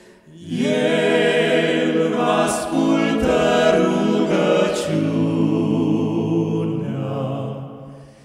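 Male vocal quartet of two tenors, a baritone and a bass singing a cappella through handheld microphones. A phrase of held chords begins about half a second in and fades away near the end.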